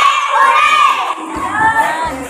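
A group of children shouting together, several high voices at once.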